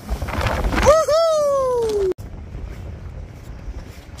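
A sea wave crashing against a concrete breakwater with strong wind buffeting the microphone. A long drawn-out cry follows, sliding down in pitch, and is cut off suddenly about two seconds in, leaving steady wind noise.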